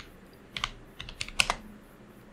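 Computer keyboard keys being typed: a handful of sharp keystrokes, two about half a second in and a quicker run of four or five around the middle.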